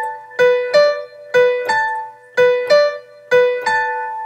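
Piano playing a slow single-note right-hand melody in pairs of notes, B–D then B–A, about one pair a second, each note ringing and fading before the next.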